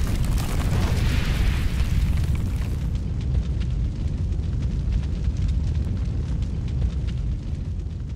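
Cinematic logo-reveal sound effect: a deep, continuous rumble with a rush that swells over the first couple of seconds, and fire-like crackling all through.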